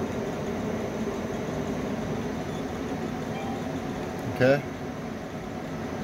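Steady machine hum from the Icon laser base unit's cooling system running, with several steady tones in it.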